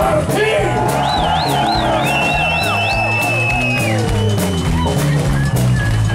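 Rock band playing live with drums and bass guitar. A high lead line wavers in a fast vibrato for about two seconds, then holds one long steady note.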